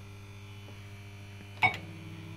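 PCP Blankity Bank fruit machine humming steadily between games. Near the end, a short sharp sound with a ringing tone as the reels start spinning for the next game.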